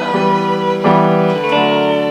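Live band playing between sung lines: held chords without singing, with a new chord coming in just under a second in.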